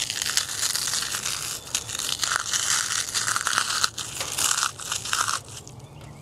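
A lump of carbonized Star Crunch snack cake, turned to brittle charcoal, crushed and ground between bare hands: a continuous dry crunching and crackling of crumbling char that dies away near the end.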